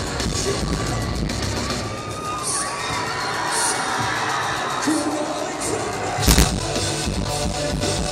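Live metalcore band playing loud through a venue PA. The bass drops away for a couple of seconds mid-way while the crowd cheers, then there is a single loud thump about six seconds in before the full band comes back in.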